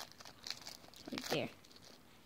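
A Tootsie Pop wrapper crinkling in the hand in short, scattered crackles.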